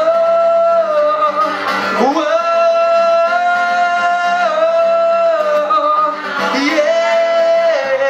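A man singing long held notes, sliding up in pitch between them, to his own strummed Takamine acoustic guitar.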